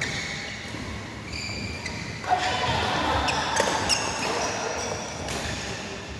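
Badminton rally in a large echoing hall: sharp racket strikes on the shuttlecock, the loudest a little over two seconds in with a few quicker hits after it, and high squeaks of court shoes on the synthetic floor.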